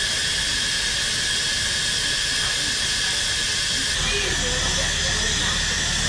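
Miniature live-steam locomotive standing in steam, hissing steadily and evenly, with a faint high ringing tone in the hiss.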